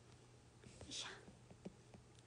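Near silence: room tone with a faint steady hum, a brief soft breathy sound about a second in, and a few faint clicks.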